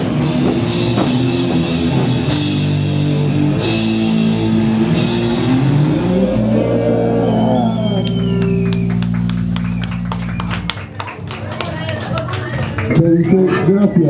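Live rock band with electric guitar, bass and drums playing hard, then closing on one long held chord with a sliding guitar note over it. The chord cuts off about eleven seconds in, leaving scattered clicks and stage noise.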